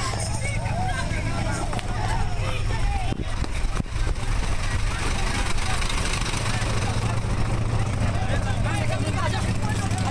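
A semi-trailer lorry's engine idling close by, a steady low hum, with people talking indistinctly in the background.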